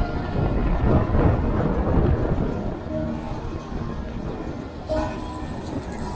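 Wind and road rumble on a camera mounted on a moving Sur-Ron electric dirt bike, a low rushing noise that is loudest in the first half and eases off after about three seconds.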